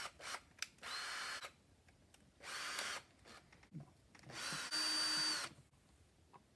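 Makita cordless drill running in three short bursts, the last one the longest, each with a steady high motor whine as the bit goes into a piece of wood. A few light clicks come just before the first burst.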